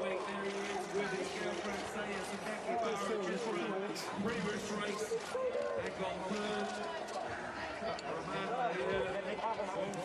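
Several voices talking over one another in a busy outdoor crowd, with a steady low hum underneath.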